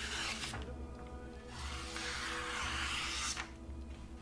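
Freshly sharpened sloyd knife slicing through a sheet of paper in an edge test, cutting cleanly: a short slicing hiss at the start and a longer one from about one and a half to three and a half seconds in. Steady background music runs underneath.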